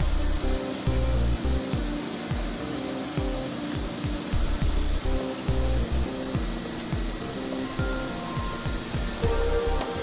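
Background music with held notes and a thudding bass beat.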